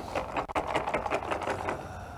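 Small draw pills rattling in a box as a hand rummages through them: a quick, irregular run of clicks, about eight a second, that stops near the end.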